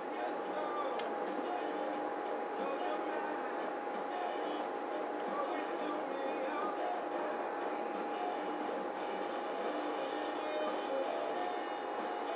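Steady room noise: an even hiss with a faint, steady high hum.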